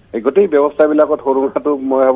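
Speech only: a man talking over a telephone line, the voice sounding narrow as through a phone.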